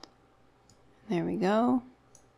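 A single sharp computer mouse click, followed about a second later by a short spoken phrase.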